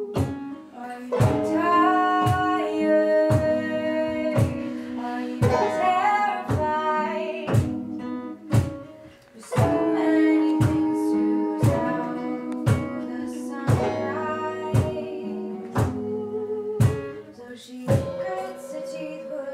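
Acoustic folk band playing with singing: banjo, acoustic guitar and upright bass, the plucked low notes keeping a steady beat of about one a second. The sound thins out briefly about eight seconds in, then the band and singing come back.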